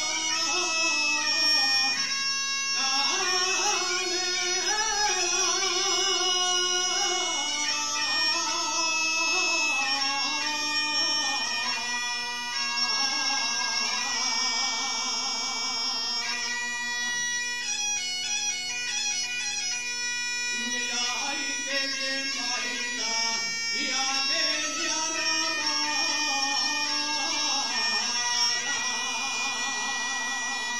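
Asturian tonada: a man sings in long, wavering phrases, accompanied by an Asturian gaita (bagpipe) that holds a steady drone under its chanter.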